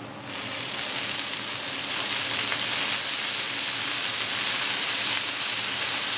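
Sake squirted from a squeeze bottle onto fried rice on a hot griddle top, bursting into a loud, steady sizzle that starts suddenly as the liquid hits the hot metal.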